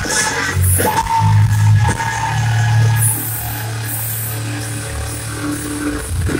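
Live heavy metal band playing through a loud PA, recorded from within the audience: low bass with drum hits, then a long held low note. It drops a little in level about halfway through.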